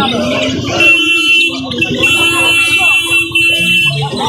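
A steady, high-pitched, buzzer-like tone that starts about a second in and holds to the end, with a short break partway through, over people talking.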